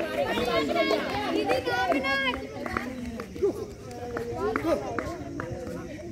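Several people's voices calling and shouting in the open, loudest in the first half. A string of short sharp taps or claps runs through the second half.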